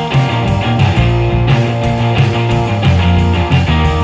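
Rock music: guitar over heavy bass and a steady drum beat.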